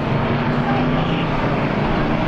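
Strictly Stock race cars' engines running steadily at low speed under a caution, a continuous drone with a few held pitches.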